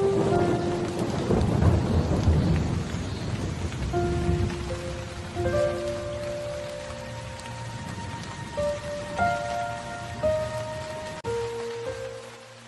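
Steady rain with a long, low roll of thunder over the first few seconds, under a slow melody of held notes.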